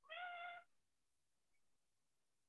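One brief high-pitched squeak with a nearly steady pitch, lasting about half a second just after the start.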